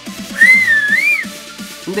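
A loud finger whistle, blown through a ring of fingers pressed to the tongue: one high note of just under a second that rises, dips and rises again before cutting off. Background music with a steady beat runs underneath.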